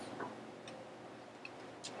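A few faint, light ticks at irregular moments in a quiet room: a stylus tapping and touching down on a tablet screen.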